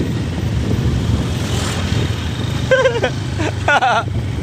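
Motor vehicle engine running steadily, a low rumble under road and wind noise from travelling on the road. Brief bits of a voice come in near the end.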